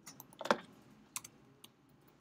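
A few separate keystrokes on a computer keyboard, the loudest about half a second in: deleting a capital letter and typing a lowercase l.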